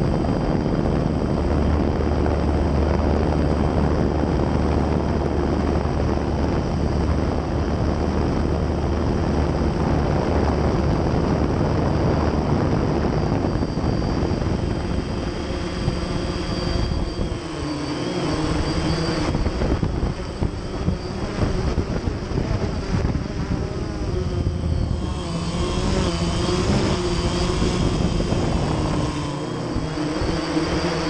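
Multirotor drone's motors and propellers buzzing steadily while it hovers. From about halfway the pitch wavers and shifts as the motors change speed.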